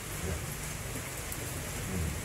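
Steady hiss of background noise in a meeting hall, with a faint low murmur beneath it.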